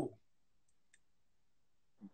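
Near silence: room tone, with two faint clicks just under a second in.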